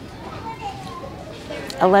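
Faint background voices of other shoppers in a store, then a woman begins speaking near the end.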